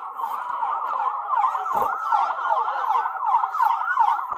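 Several police car sirens sounding at once, their fast rising-and-falling sweeps overlapping into one unbroken wall of sound.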